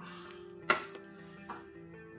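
Background music with steady tones, over which there is a sharp metal click about two-thirds of a second in and a fainter one a little later. The clicks come from a spark plug and a cylinder-head temperature sensor's ring terminal being handled together.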